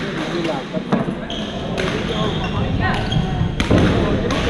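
Badminton rackets hitting a shuttlecock during rallies in a gym hall: several sharp hits, roughly a second apart, with shoes squeaking on the court floor.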